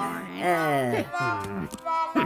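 A cartoon character's wordless voice: two long vocal sounds that each slide down in pitch, with steady music notes coming in near the end.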